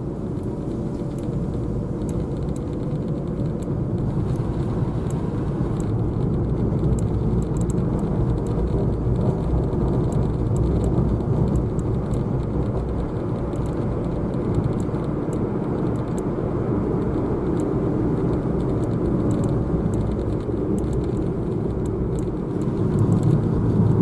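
Steady engine and tyre road noise inside a moving car's cabin: a low rumble with a faint steady hum.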